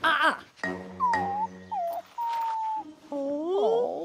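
Wordless cartoon character vocals: a cartoon puppy's whining, whimpering calls, then several gliding voices overlapping near the end, over a music score.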